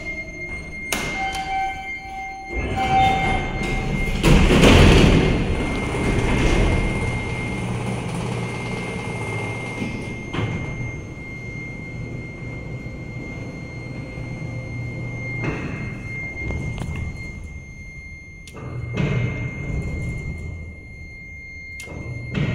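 Tejas freight elevator operating: a short beep tone in the first few seconds, then a loud rattling clatter of the doors and gate about four to six seconds in. A steady low hum of the running car follows, with scattered knocks and thuds later on, all under a constant high whine.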